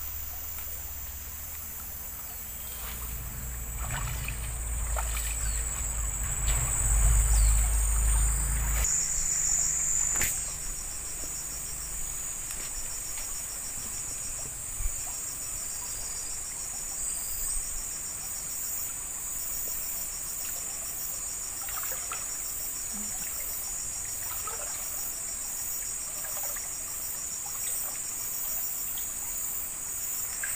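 Steady high-pitched chorus of insects, joined from about nine seconds in by a rapid pulsing chirp. In the first few seconds, feet splash through a shallow stream over a low rumble.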